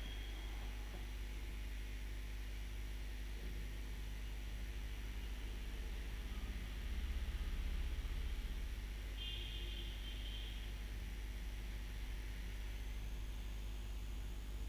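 Open-microphone room tone: a steady low electrical hum under faint hiss, with a soft low rumble about seven seconds in and a brief faint high tone a couple of seconds later.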